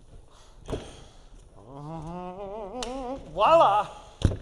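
A man's voice drawn out in a wavering, sing-song tone, loudest near the end, with no clear words. A single thump comes a little under a second in.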